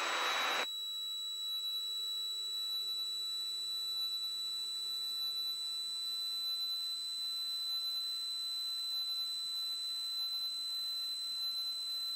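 A steady high-pitched electronic tone with fainter steady tones beneath it, over a low hiss. It follows a brief burst of noise that cuts off just under a second in.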